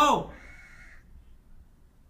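A man's speaking voice breaks off into a pause, and a faint bird call sounds once in the background for under a second.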